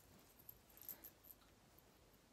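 Near silence, with a few faint, brief rustles and clicks of clothes being rolled up tightly by hand.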